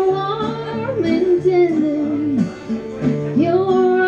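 A woman singing long, sliding notes with acoustic guitar and electric guitar accompaniment, played live. One sung phrase falls away about two and a half seconds in, and the next begins a moment later.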